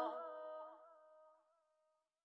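The song's last sung 'oh' held with a slight waver, dying away with its reverb within about the first second.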